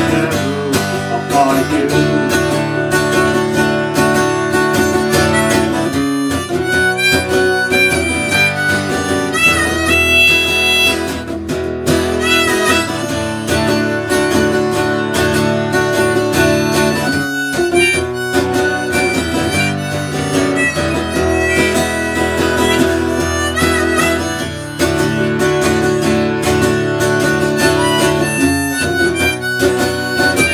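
Diatonic harmonica played in a neck rack over acoustic guitar accompaniment, an instrumental harmonica break in a folk-country song, with a few wavering, bent notes around the middle.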